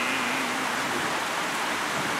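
A steady, even hiss of outdoor background noise with no distinct events. The last drawn-out syllable of a man's voice fades out about half a second in.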